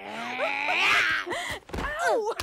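A cartoon dragon's long, strained vocal sound, rising in pitch with a breathy edge, followed by a few short voiced syllables and a dull thump near the end.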